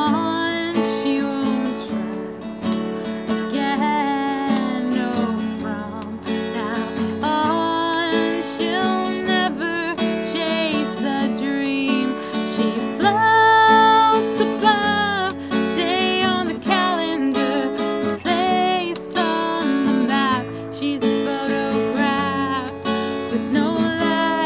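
A woman singing a slow song, accompanied by her own strummed acoustic guitar.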